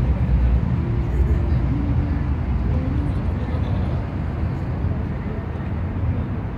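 Riverside city night ambience: a steady low rumble of road traffic, with faint voices of people talking in the distance.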